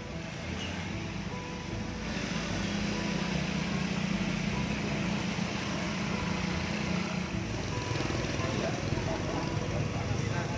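Roadside traffic: motorcycle engines passing close by, loudest from about two to seven seconds in, over a steady street noise with voices in the background.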